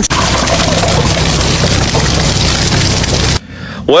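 A loud, steady rushing noise over a low engine-like hum, cutting off abruptly about three and a half seconds in.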